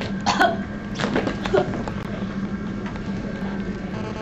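A young woman's short, hiccup-like choking gasps and coughs in the first two seconds, acted out as if she has swallowed something harmful, over a steady low hum.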